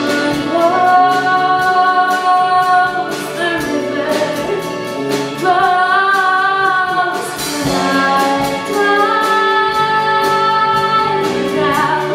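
A woman singing a slow solo over instrumental accompaniment, holding long notes with vibrato.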